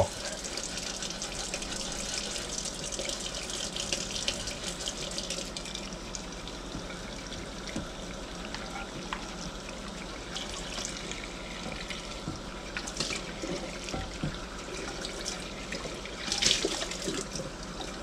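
Kitchen tap running into a stainless steel sink while a cast iron skillet is scrubbed and rinsed in soapy water. The water gets louder for a moment about sixteen seconds in.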